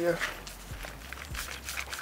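Faint handling sounds: soft rustles and light taps of a plastic sushi rolling mat being pressed over a rice roll on a cutting board.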